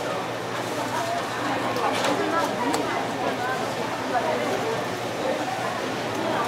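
Indistinct voices talking in the background throughout, with a few short, sharp clicks of a knife tapping on a plastic cutting board while a flatfish fillet is skinned.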